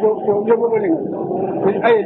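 A man's voice speaking in a lecture, continuing without a pause.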